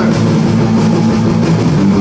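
Live rock band playing loud and steady without vocals: distorted electric guitars holding a thick, dense drone over drums and cymbals.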